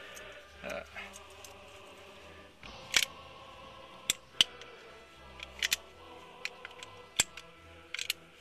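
Nagant M1895 revolver worked by hand: a string of sharp metallic clicks, about eight over several seconds, as the hammer is cocked and the stiff trigger is pulled on the freshly cleaned and reassembled action.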